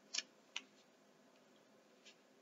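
A tarot card being laid down on a table: two short, faint clicks within the first half-second as the card is set down.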